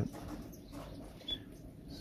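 Small finches chirping faintly, with one short high chirp a little over a second in, over low background noise.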